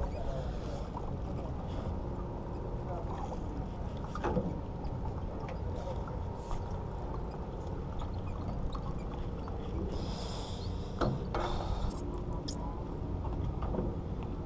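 A steady low rumble on a fishing boat, with a few sharp clicks about four seconds in and again around eleven seconds.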